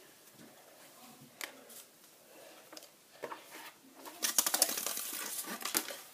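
Handling sounds of a paper propeller being fitted onto the shaft of a small DC motor: a few faint clicks, then a burst of rapid rattling clicks of paper and plastic lasting about two seconds near the end.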